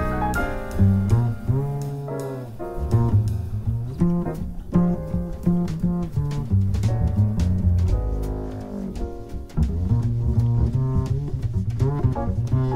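Jazz quartet music with a plucked upright double bass to the fore, its line moving quickly through low notes with some slides, over light drum and cymbal strokes and quiet piano.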